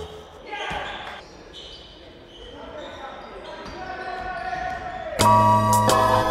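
Live basketball court sound: a ball bouncing and players' voices, echoing in a large sports hall. Background music cuts back in about five seconds in.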